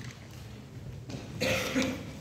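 A cough about a second in, after a moment of quiet room tone.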